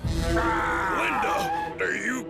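A man's long, drawn-out groan over background music.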